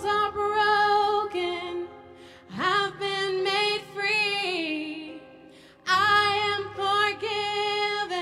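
A woman singing a worship song into a microphone over quiet backing music, in three phrases with short breaks between them, some held notes wavering in pitch.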